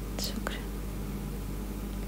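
A woman's brief, faint breathy whisper with a small mouth click shortly after the start, over a steady low hum.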